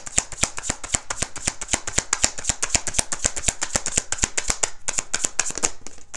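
Tarot deck being shuffled in the hands: a quick run of card-on-card flicks, about eight a second, that stops shortly before the end.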